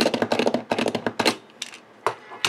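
Handheld hole punch being pumped by hand to punch through card: a rapid train of sharp clicks that stops about a second in, with a couple of single clicks after.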